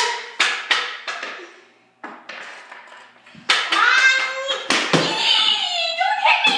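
Floor hockey sticks and a ball knocking sharply on a hard floor, several hits in the first second and more later. In the second half a child's voice calls out without words.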